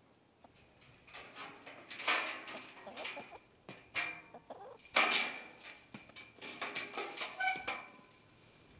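Chickens clucking in a run of short calls, with louder squawks about two and five seconds in.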